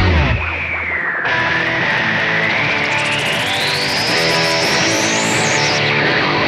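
Instrumental break in a rock song: the band thins out to electric guitar, the bass dropping away after about a second. Over it a high sustained tone dips, then climbs slowly and steadily in pitch.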